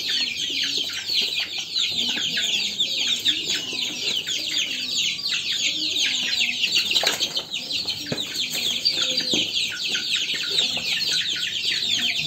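A brood of young native (ayam kampung) chicks peeping continuously, many high, falling chirps overlapping at once, from hungry birds whose feeding is late. A single light knock sounds about seven seconds in.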